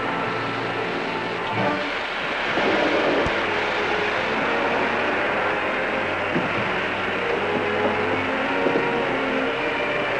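Sustained dramatic serial underscore over a rushing noise, which swells about two and a half seconds in, with a single thump a little after three seconds.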